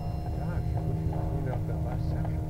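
Steady low mechanical rumble with a constant hum from running machinery, under faint talk.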